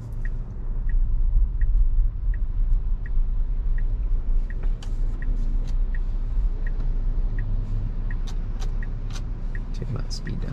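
Low, steady rumble of cabin road noise inside a Tesla Model Y, with the turn signal ticking evenly about once every 0.7 seconds while the car waits to turn and then begins to pull through the intersection.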